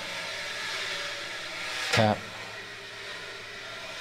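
Wire brush swept side to side across a snare drum head in a smooth, continuous swish with no gap between strokes, the legato brush sound, with a light brush tap about two seconds in.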